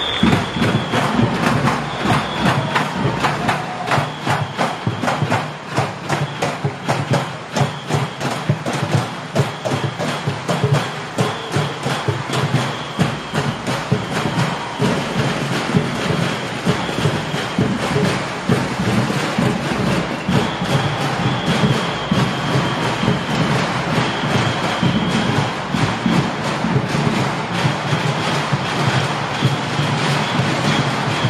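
Junk-and-drum percussion group playing live, a fast, driving rhythm of dense hits on drums and junk objects that carries on without a break.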